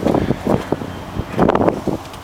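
Wind buffeting the microphone in a few short gusts, over a faint steady low hum.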